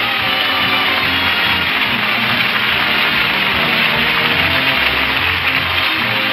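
Opening theme music of a radio sitcom, playing steadily and loudly.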